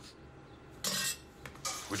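A brief clatter of kitchenware, plate or pot, about a second in.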